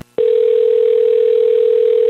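Telephone ringback tone heard down the caller's line: one steady two-second ring, the line ringing at the other end before it is answered.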